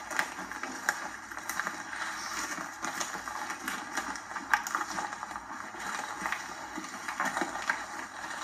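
Footsteps of several people walking through dry leaf litter and brush: an uneven rustling crunch with scattered sharp crackles.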